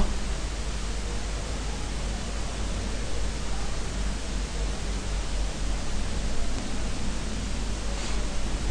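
Steady hiss with a low hum underneath: the background noise of a voice-over microphone recording, with no other event standing out.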